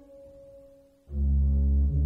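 Pipe organ playing: a held chord dies away into a brief lull, then about a second in a loud, deep chord with heavy sustained bass notes comes in.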